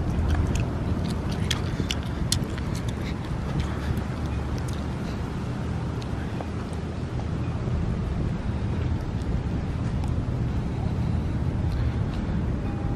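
Outdoor ambience with a steady low rumble of wind on the microphone over distant city traffic, with a few light ticks in the first few seconds.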